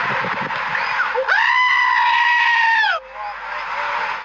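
A goat giving one long, loud, steady call, lasting about a second and a half and starting just over a second in.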